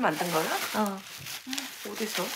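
Plastic bubble wrap crinkling and crackling as hands unwrap a ceramic cup, with voices talking over it.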